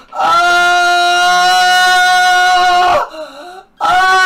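A young man's long, held wail on one steady high note for nearly three seconds. It breaks off and a second wail starts near the end: cries of pain from the electric pulses of electrode pads stuck to his abdomen.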